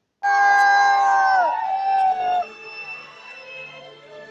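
A group of young men holding a long, loud cheer that bends down and breaks off about two and a half seconds in, followed by quiet background music.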